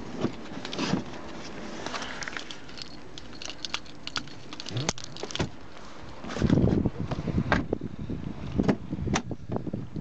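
Handling noise from someone moving about a car's cabin with a handheld camera: rustling, scattered clicks and knocks on the interior trim and door, with a louder dull bump about six and a half seconds in.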